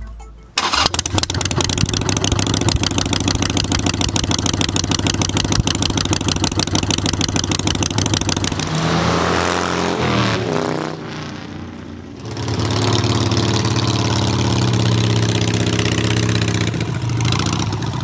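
Harley-Davidson Sportster V-twin chopper on short open drag pipes, coming in suddenly about half a second in and running loud with a rapid, even firing beat. About nine to eleven seconds in it rides past, its pitch falling as it goes by. After a brief dip it is loud and steady again from about twelve seconds in.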